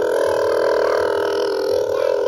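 A person's voice holding one long, steady, loud note without a break, like a drawn-out sung or shouted 'aaah'.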